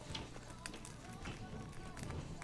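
Faint, scattered small clicks and crackles of fingers picking at crispy fried chicken on a paper plate, close to the microphone.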